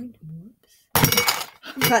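Small makeup products and tools clinking and clattering together as they are handled on a crowded table, one loud burst lasting about half a second about a second in, with a shorter knock near the end.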